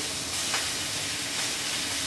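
Ribeye steak sizzling steadily on a hot frying plate (bakplaat) over a gas burner.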